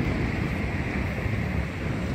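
Wind buffeting the microphone of a handheld phone, a steady low rumble with a faint hiss above it.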